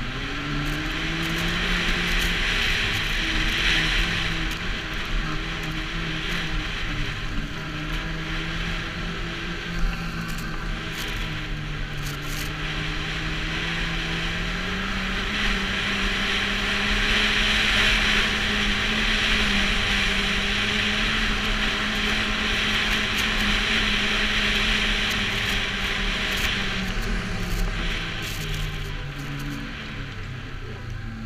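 Snowmobile engine running under way, its pitch stepping up about halfway through as the sled speeds up and easing off near the end, over a steady rushing hiss.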